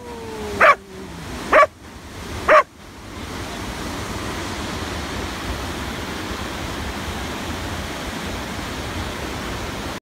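A dog barks three times, about a second apart, over the steady rush of a whitewater river rapid. After about three seconds only the even roar of the rapid remains.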